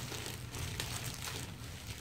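Faint crinkling of a clear plastic bag as a stainless steel water bottle is turned and handled inside it, over a low steady hum.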